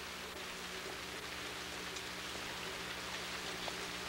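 Room tone in a pause between lines: a steady hiss with a low hum under it, and one faint click near the end.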